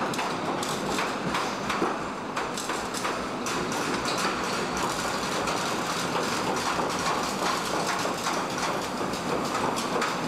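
Automated robotic body-shop line running: a steady machinery din with many quick clicks and clanks throughout.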